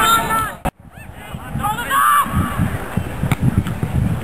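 Short shouted calls from men, one near the start and a louder one about two seconds in, over a constant low rumble of wind on the microphone. The sound cuts out for a moment just under a second in.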